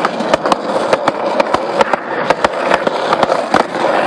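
Skateboard wheels rolling on a concrete sidewalk: a steady rolling rush broken by frequent sharp clicks, about three or four a second.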